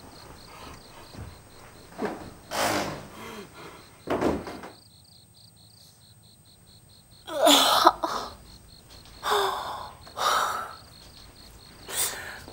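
Crickets chirping steadily, with a person groaning and a woman moaning and sobbing in pain in short loud cries. The loudest cry comes a little past halfway.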